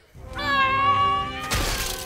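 The Witch-king's death shriek from the film: one long, loud, held scream that wavers slightly in pitch, breaking into a harsh burst of noise about one and a half seconds in.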